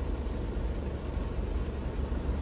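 A car's engine running at low speed in a slow traffic jam, heard from inside the cabin as a steady low rumble.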